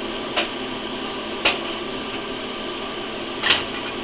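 Steady hum of the idling inverter welder's cooling fan, with three short sharp clicks: one near the start, one about a second and a half in, and one near the end.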